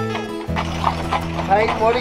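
Music for the first half-second. Then, after a sudden change, the hooves of a team of draft mules clop on a paved road under steady background tones, and a woman's voice comes in near the end.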